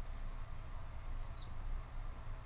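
Room tone: a steady low hum, with a couple of faint, short, high squeaks a little past halfway.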